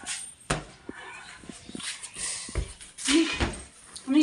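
An inflated rubber balloon being batted by hand: a few sharp taps and knocks, the strongest about half a second in. A short burst of voice follows around three seconds in.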